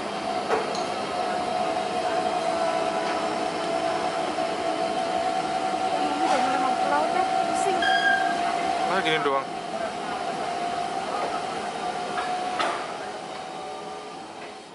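Star Ferry's machinery running with a steady whine on board as the ferry comes alongside the pier. The whine cuts off suddenly near the end, and people's voices sound faintly behind it.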